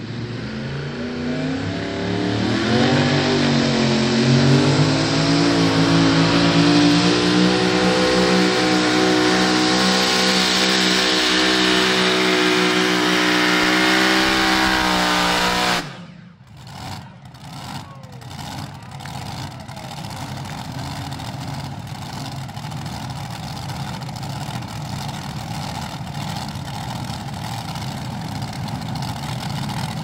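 Multi-engine heavy modified pulling tractor at full throttle under load, its pitch climbing over the first few seconds, then holding high and steady. The engines cut off abruptly about halfway through. A few sharp pops follow, then a quieter, steady engine running to the end.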